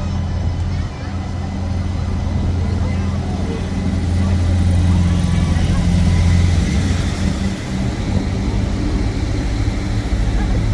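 Passenger railcar arriving at a platform, its engine running with a steady low drone that grows louder as the train draws alongside. The deepest part of the drone drops away about two-thirds of the way through.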